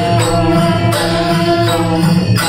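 Live Newar folk dance music: a two-headed barrel drum beating a steady rhythm with small hand cymbals, under a sustained melody from a side-blown flute.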